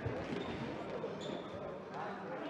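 A futsal ball being kicked and bouncing on a sports-hall floor during play, with a sharp thump right at the start, amid players' shouts and voices in the hall.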